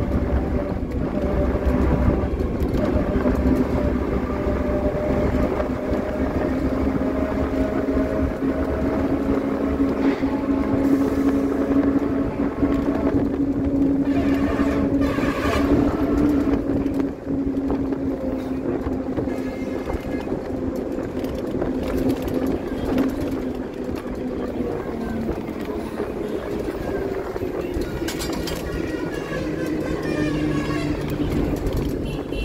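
A motor vehicle's engine running steadily under way, with a continuous hum over road rumble; the hum sinks slightly in pitch late on and shifts near the end.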